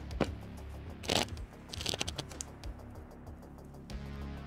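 Background music with a steady low bass line, over which come a few short rustles and clicks of paper and card being handled on a desk, the loudest about a second in.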